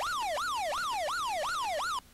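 Electronic siren sound effect, a fast yelp whose pitch sweeps up and down about four times a second at an even level, used as a mock alert. It cuts off suddenly at the end.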